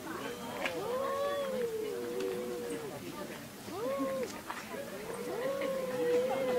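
Two domestic cats yowling at each other in an aggressive standoff, the threat calls that come before a fight. The calls are long, wavering moans: one drawn out for over two seconds, a short one in the middle, and another long one starting near the end.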